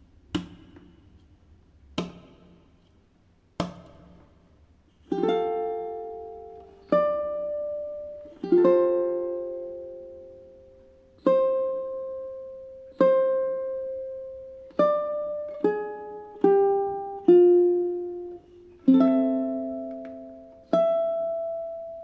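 Solo ukulele fingerpicked at a slow tempo, single notes and chords each left to ring and fade, coming closer together in the second half. It opens with three sharp clicks at an even beat, about a second and a half apart, before the first notes sound.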